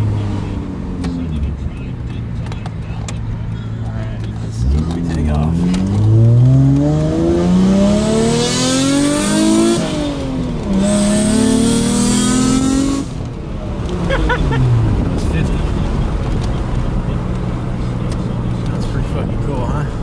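A Mazda KL-ZE 2.5-litre V6 in a 1994 Ford Probe GT, heard from inside the cabin, pulling hard from low revs. It starts about five seconds in and climbs through one gear, then drops at the shift about halfway through and climbs again. Near the two-thirds mark it falls away off the throttle to a steady run.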